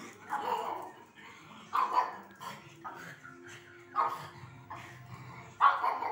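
Pug barking excitedly at animals on the television, a handful of short sharp barks about a second and a half apart, the loudest near the end.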